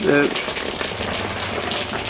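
Water from the sprinkler heads falling steadily on the solar panel roof overhead and running off it, heard from underneath.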